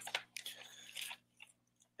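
Faint mouth clicks and a soft breath close to a headset microphone, in a pause between words.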